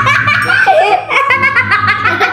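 Two young girls laughing loudly together in rapid bursts of giggles.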